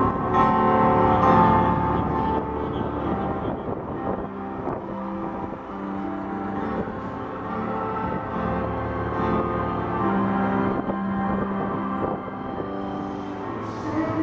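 Live piano intro to a slow pop ballad: held chords changing every second or two, played over a concert PA.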